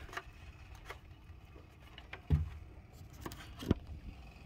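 Handling noise of a phone camera lying on a wooden deck and being picked up: faint rustling, a low thump a little past halfway, then a couple of sharp knocks near the end.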